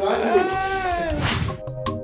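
A person's drawn-out high cry, rising and then falling in pitch for about a second and ending in a breathy rush, typical of the end of a laugh. Background music with a steady beat comes in about halfway through.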